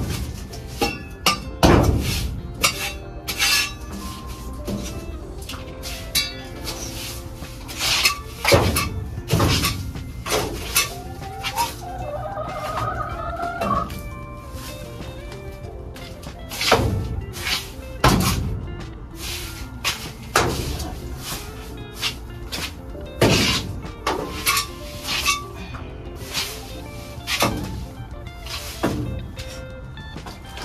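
Small hand rake scraping and knocking irregularly against the floor and walls of a chicken coop as bedding shavings are raked out, over steady background music.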